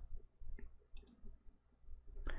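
Faint computer mouse clicks, about half a second and about a second in, over a low room hum.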